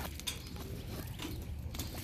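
Faint handling sounds: a few light clicks and rustles as a fabric tactical bag is moved against a metal bike-trailer rack, over a low steady background rumble.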